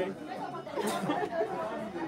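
Low chatter of several people talking at once, no single voice standing out.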